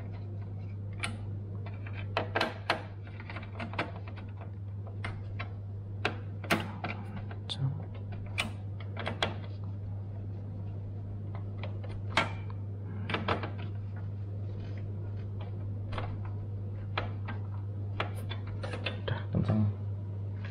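Irregular clicks and small knocks of a screwdriver turning the heatsink retaining screws down onto the processor in a desktop PC's metal case, over a steady low hum.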